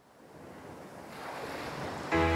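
Ocean surf sound effect fading in from silence, a steady wash of waves growing louder over about two seconds.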